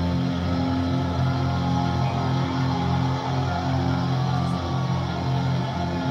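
Music from a live concert broadcast playing through the speaker of a 1954 RCA CT-100 color television, with steady held chords.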